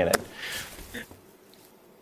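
A spoken word ends, then faint breathy laughter dies away into near silence.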